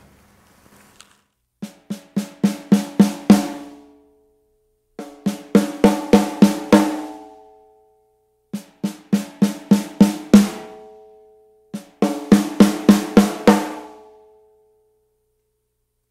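Metal-shell snare drum played with rimshots, the stick striking rim and head together for a sharp, gunshot-like crack with more volume and attack. Four runs of about eight strokes each, speeding up, the drum's tone ringing on after the last stroke of each run.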